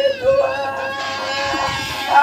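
A person's voice holding a long, steady note, stepping up to a higher held note about half a second in.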